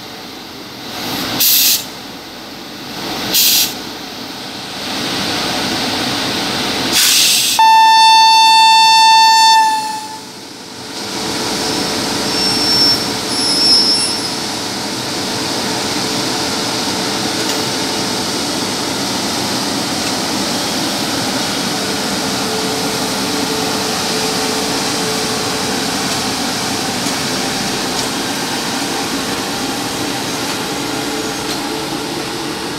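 A few short hissing bursts, then one long blast of an Indian Railways WAP-7 electric locomotive's air horn, about two and a half seconds long, as the train moves off. After the horn, the steady rolling of the locomotive's wheels and then the coaches on the rails as the departing train passes.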